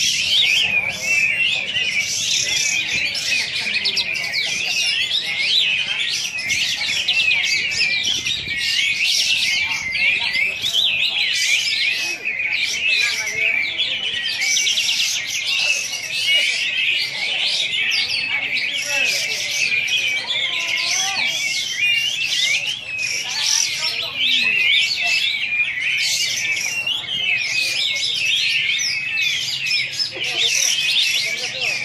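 Kapas tembak bulbul singing its 'besetan' song: a long, unbroken run of rapid chirps and trills with no pauses.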